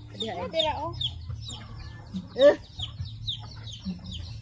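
A flock of chickens clucking and chirping while they feed, with many short, high, falling chirps several times a second. One louder rising call stands out about two and a half seconds in.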